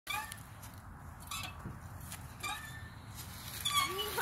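Bucket swing squeaking as it swings, a short gliding squeak about once a second, in time with the swing's motion.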